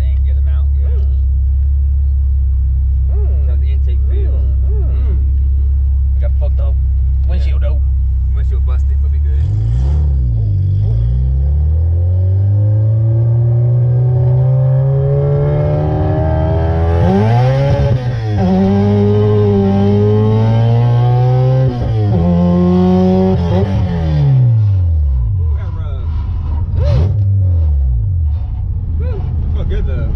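K24 engine of a swapped Acura Integra, fitted with a Hybrid Racing intake, heard from inside the cabin. It holds a steady drone at first, then accelerates from about ten seconds in, the revs climbing and dropping at two upshifts before easing off near the end.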